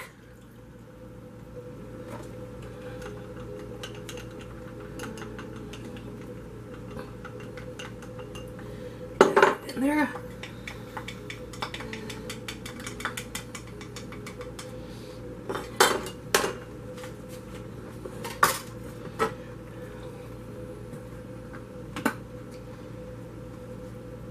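A utensil stirring liquid in a glass mixing bowl, with many light clinks against the glass and a few louder knocks around the middle. The liquid is beef stock being mixed into cream for a meatball sauce.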